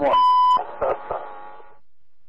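A single steady high censor beep, about half a second long, blanking out a swear word in a recorded telephone conversation. It is followed by a brief word from a man's voice over the phone line, then faint line hiss.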